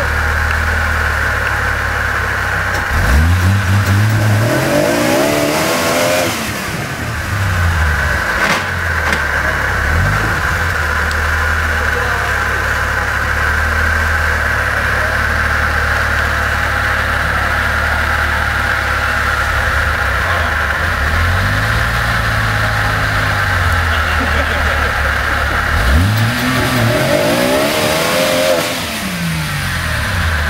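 A lifted Jeep's engine running at low speed under load as it crawls over a rock ledge, revving up in two long bursts that climb and then fall in pitch, about three seconds in and again near the end. A single sharp knock about eight and a half seconds in.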